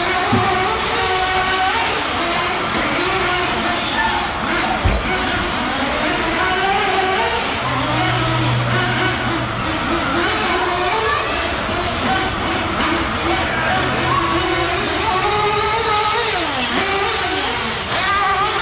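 Several nitro-powered 1/8-scale RC buggy engines buzzing and revving at high pitch as they race around the track, over music.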